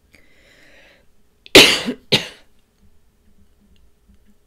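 A woman coughing twice in quick succession, about half a second apart, the first cough longer and louder, after a faint breath in.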